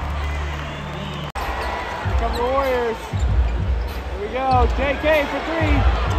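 A basketball bouncing on a hardwood court in repeated low thumps, roughly once a second, amid arena crowd noise. A steady low hum ends abruptly about a second in.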